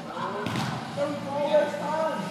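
A football struck once with a sharp thud about half a second in, followed by a player's raised, drawn-out shout.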